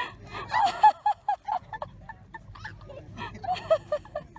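Geese honking: runs of short, repeated calls, several a second, coming in bursts.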